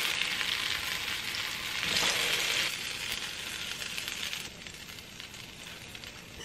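Mashed-potato pancakes sizzling in hot oil in a frying pan, a steady frying hiss that swells about two seconds in and grows quieter for the last second and a half.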